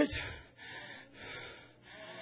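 A man breathing hard into a microphone: two breaths drawn one after the other, each about half a second long.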